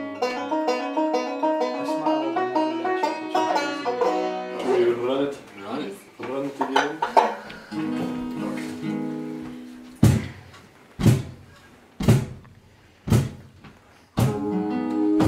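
Five-string banjo picking fast rolls over acoustic guitar, then held chords. Near the end come four sharp accented hits about a second apart, each dying away.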